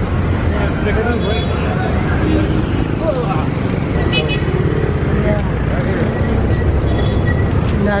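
Road traffic close by: a steady low rumble of vehicle engines, with indistinct voices over it.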